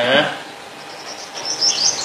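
A small bird chirping: a rapid series of short, high chirps begins about a second and a half in.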